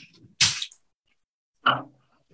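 A woman's breath and voice: a short, sharp, hissy exhale about half a second in, then a brief murmured syllable near the end.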